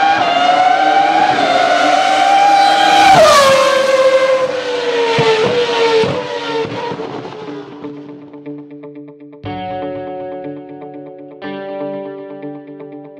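Race car engine at high revs, its pitch climbing, then dropping sharply as it passes by about three seconds in and fading away over the next few seconds. Plucked-string music notes start near the end.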